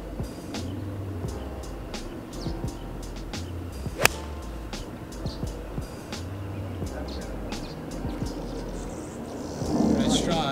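Background music with a steady beat, and about four seconds in a single sharp crack, the loudest sound: a golf club striking the ball on a tee shot.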